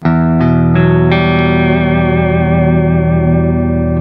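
Vola OZ super strat electric guitar through a REVV Generator 120 amp on a clean tone with a little delay: four notes picked one after another in the first second, then left ringing together as one chord whose brightness slowly fades.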